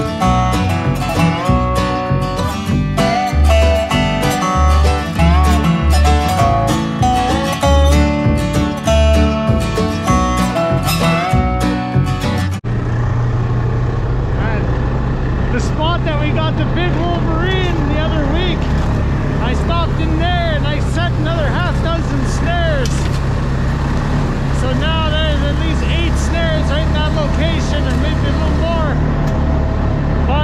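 Acoustic guitar background music for the first dozen seconds, cutting off abruptly. After the cut, an engine idles with a steady low hum while a chorus of dogs barks and howls in many short rising-and-falling calls.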